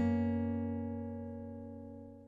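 Opening-theme music: a single acoustic guitar chord rings out and slowly fades away.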